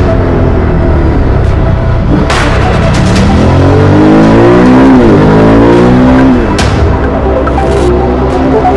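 A motorcycle engine revving, its pitch rising over a few seconds, dipping once midway, then rising again before cutting off about six seconds in. It is laid over background music with heavy hits.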